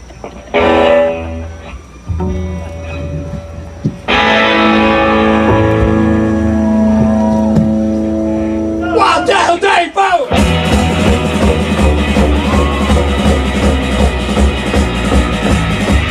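Live garage rock band starting a song: held chords on electric guitar and keyboard ring out, then drums and the full band come in about ten seconds in.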